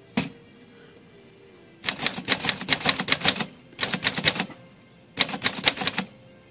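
Smith Corona standard portable manual typewriter being typed on: one keystroke near the start, then three quick runs of type bars striking, with short pauses between. The typing is a test of whether a freshly resoldered type slug holds its alignment.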